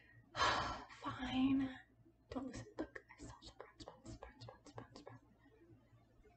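A woman lets out a breathy exhale and a short hum, then whispers quietly to herself for a few seconds.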